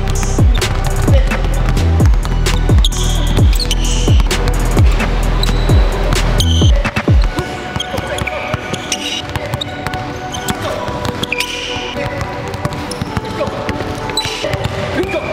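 Music with a heavy bass beat that cuts out suddenly about halfway through; after it, several basketballs are dribbled on a hardwood gym floor, a quick irregular patter of bounces.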